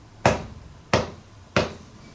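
Drumsticks clicked together as a count-in: three sharp clicks at an even tempo, about two-thirds of a second apart, each with a short room echo.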